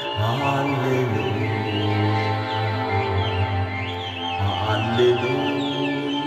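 Accordion playing an instrumental passage: held chords over a steady low bass, with a fresh chord about four and a half seconds in. Birds chirp lightly in the background.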